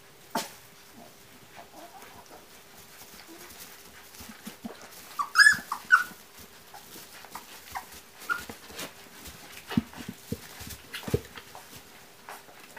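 Siberian husky puppies whimpering and squeaking, with a short cluster of high squeals about five seconds in and fainter squeaks later. A few sharp clicks come between them.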